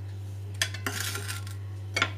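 Glass and ceramic bowls knocking and scraping as they are moved and set down on a counter: a sharp clink about half a second in, a short rattle around one second, and another clink at the end.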